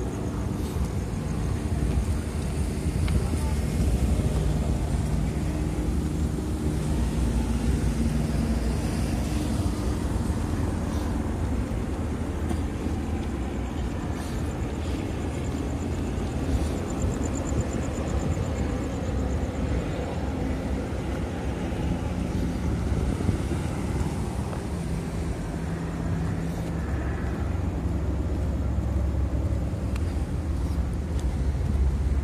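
Night-time city street ambience: a steady low rumble of road traffic, with cars driving past.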